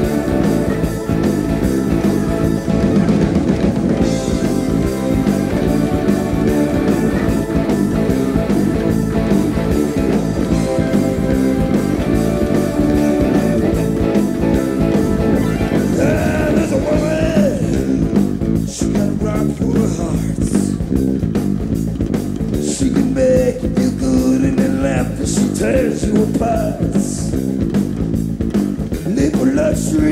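Rock band playing live: electric guitar, bass guitar and drum kit, with a voice singing over the band in the second half.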